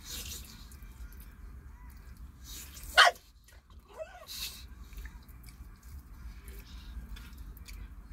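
English bulldog giving one short, loud bark about three seconds in, then a softer call a second later, begging for the food it is being told it will get a share of.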